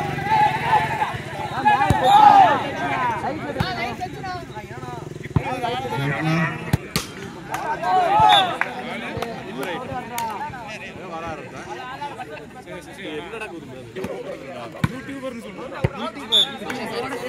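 Volleyball players and spectators shouting and calling out over one another. A few sharp smacks come through, typical of hands striking the ball.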